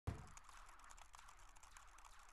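Faint, irregular clicking of video game controller buttons being pressed.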